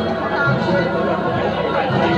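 Large crowd chattering, many voices at once at a steady level, with a few steady ringing tones held underneath.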